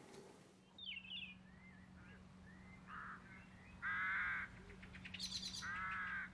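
Crows cawing: three calls, a short one about three seconds in, a longer and loudest one a second later, and another near the end, with small birds chirping faintly in between.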